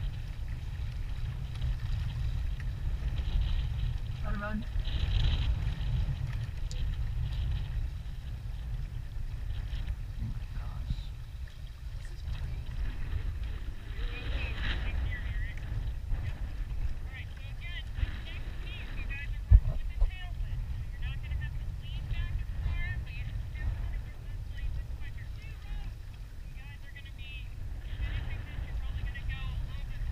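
Wind rumbling on the microphone of a camera mounted on a rowing shell, with water against the hull, faint voices, and one sharp knock about twenty seconds in.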